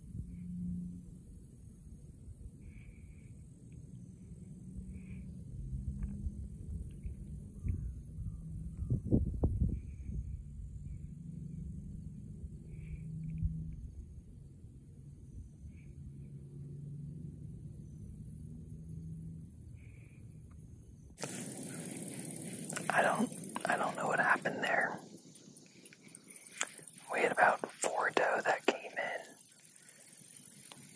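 A low rumble with a few faint, short, high chirps. Then, after a sudden cut about two-thirds of the way in, a man whispers in short phrases.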